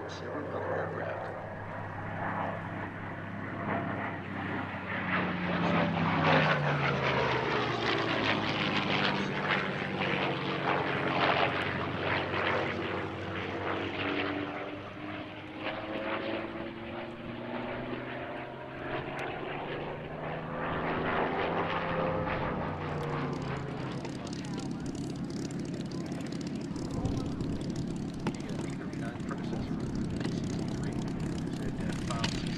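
P-51D Mustang fighter's Packard Merlin V-12 engine and propeller droning as it flies by. The engine note drops in pitch as it passes about five seconds in and again around twenty seconds in, loudest in the first pass.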